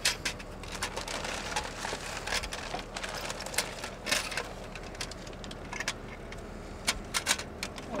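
Plastic drill bit case being handled, opened and shut: irregular sharp clicks and knocks, with busier rattling in the first few seconds and a quick cluster of clicks near the end.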